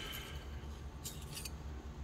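Faint metallic clinks of stainless steel fender washers handled against each other, a short cluster about a second in, over a low steady hum.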